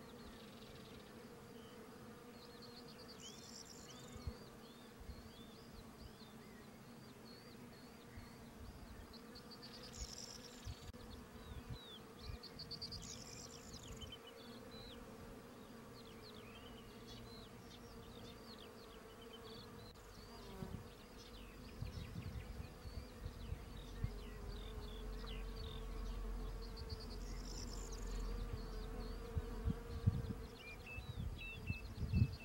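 Mud dauber wasps (Sceliphron) buzzing with a steady, slightly wavering hum as they work on wet mud. A low rumble builds in the second half.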